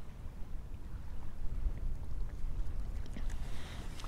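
Wind buffeting the microphone in a low, uneven rumble, over choppy water lapping at a kayak, with a few faint ticks.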